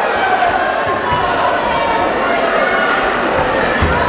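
A crowd of spectators shouting and cheering without letup, with a few dull thuds from the boxing ring: one about a second in and two near the end.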